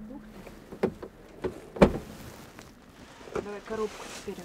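Plastic protective sheeting rustling and a few knocks of plastic cab trim being handled, the loudest knock about two seconds in. A brief bit of voice near the end.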